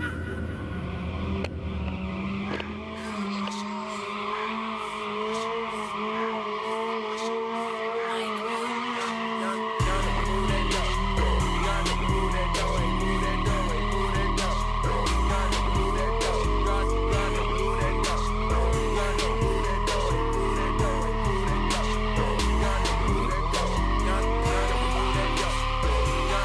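A sportbike doing a burnout: the engine is held at high revs, wavering and climbing, while the spinning rear tyre screeches on the pavement. A hip-hop beat with heavy bass comes in about ten seconds in and is the loudest sound from then on.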